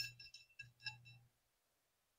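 Near silence, with a few faint light clicks in the first second.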